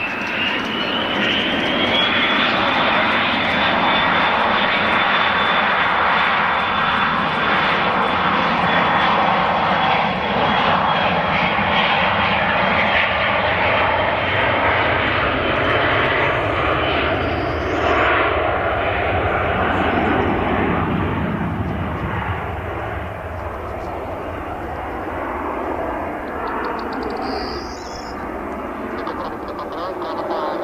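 A Dassault Falcon 900EX's three Honeywell TFE731-60 turbofans spool up to takeoff thrust, with a whine rising in pitch over the first couple of seconds. They then run loud and steady through the takeoff roll and lift-off, growing quieter in the last several seconds as the jet climbs away.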